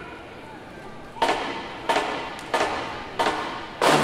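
Low crowd chatter, then from about a second in a marching band's drum section strikes five loud, evenly spaced hits, each ringing out.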